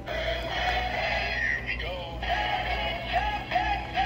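Gemmy animated plush zebra playing its song, with singing over music from its small built-in speaker, set off by pressing its foot button.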